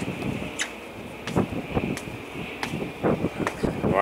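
Wind buffeting the microphone on an open ship's deck: irregular low rumbling gusts with a few short sharp clicks. Underneath runs a faint steady high whine.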